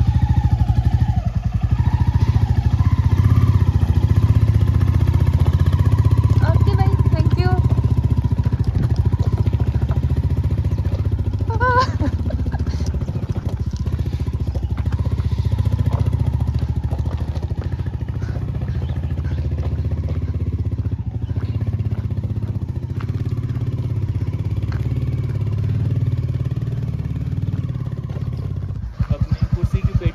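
Royal Enfield motorcycle engine running with a steady, even beat as the bike pulls away and climbs a short, steep gravel slope, growing a little fainter as it moves off. A couple of brief voice-like calls rise over it partway through.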